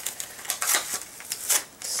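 Plastic tape-runner dispenser and refill cartridge being handled: a series of irregular light plastic clicks and taps.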